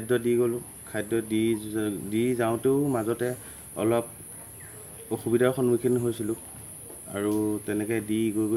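A man talking, with a steady high-pitched insect chorus droning behind him.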